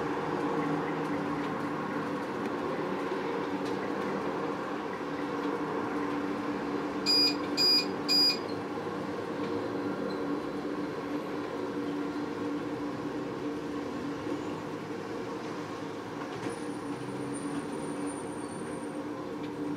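Steady machine hum throughout, with three short, high-pitched electronic beeps about half a second apart around seven seconds in.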